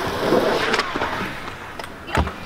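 Kick scooter wheels rolling on concrete, a steady rolling noise that slowly grows fainter, with a few faint clicks.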